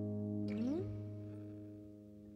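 Acoustic guitar chord ringing out and fading away, with a short upward slide in pitch about half a second in.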